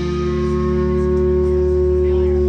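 Live rock band holding a chord at the end of a song: electric guitar sustaining over a low bass note, steady and unchanging.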